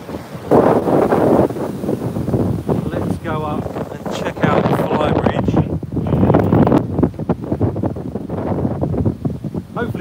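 Strong gusting wind buffeting the phone's microphone, a loud, uneven rumble that rises and falls with each gust and drowns out a man's voice.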